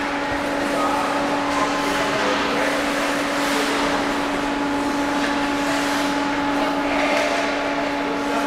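Ice rink hall ambience: a steady machine hum of one constant pitch over an even wash of noise, with faint voices mixed in.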